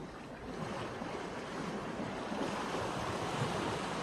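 Small sea waves washing on the shore, with some wind, swelling louder from about a second in and easing slightly near the end.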